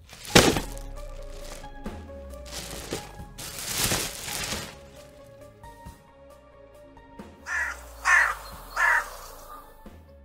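Dubbed sound effects over background music: a sharp bang about half a second in, then a longer rattling noise around four seconds in. Near the end come three crow caws.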